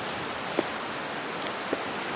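Steady rushing of ocean surf, with two faint clicks of macadamia nuts in their hard shells knocking together as a hand sorts through them in a cardboard box, one about half a second in and one near the end.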